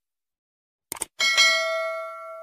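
Subscribe-button animation sound effect: two quick mouse clicks about a second in, then a bright bell chime that rings on and slowly fades.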